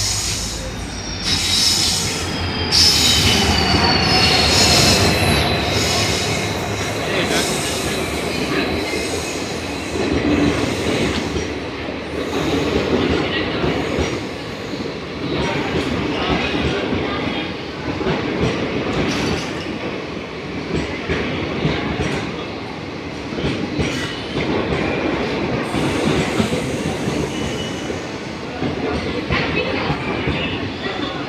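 Indian Railways passenger train rolling in alongside the platform: a high wheel squeal falls in pitch over the first few seconds, then the coaches pass with a steady rumble and a regular clack of wheels over rail joints.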